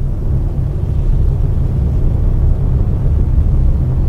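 A loud, steady low rumble with no words over it.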